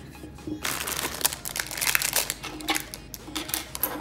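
Rustling and crinkling of plastic packaging, with light clicks and taps of small items being handled, starting about half a second in.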